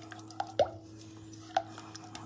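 Thick flour-thickened sauce being stirred in a saucepan with a silicone spatula: a few short, soft wet plops and squishes.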